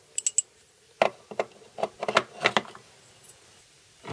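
Triangular ceramic stones of a Spyderco Sharpmaker clicking and tapping against each other and the plastic base as they are handled and slotted in: a string of about eight separate light clicks.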